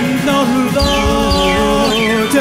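Live church worship music: held sung notes over the band, with a deep bass coming in just under a second in.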